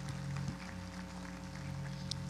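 Soft, steady background music: a single chord held without change.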